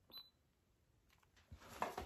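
A single short, high electronic beep from a Canon G7X Mark III compact camera, followed by near silence and faint handling noise near the end.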